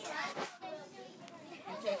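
Children's voices chattering over one another, with no clear words.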